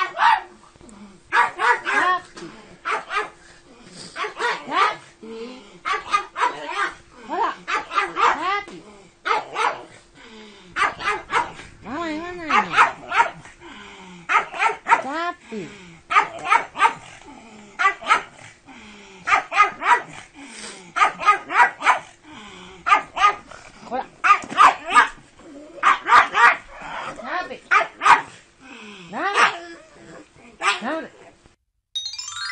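Pug barking over and over in quick runs of several sharp, high barks, with short pauses between runs.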